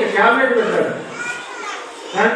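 Speech in a large hall, with children's voices among it.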